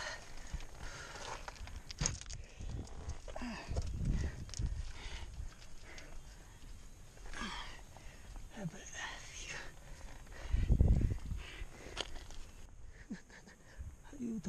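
A climber breathing hard while scrambling up loose, shattered rock, with scrapes and knocks of hands and boots on stone. A loud low rumble comes about ten and a half seconds in.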